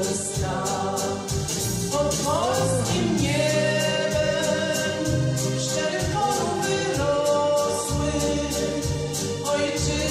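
A woman singing a Polish patriotic song over a recorded backing track with a steady beat and bass line.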